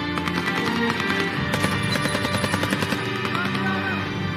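Rapid automatic gunfire, many shots in quick succession and thickest in the middle, over a sustained, tense film score.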